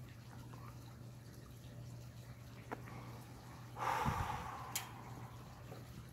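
A smoker's breathy exhale after a drag on a cigarette, about four seconds in and lasting about a second, with a small thump and a click during it. Before it there is only a faint steady hum and a small click.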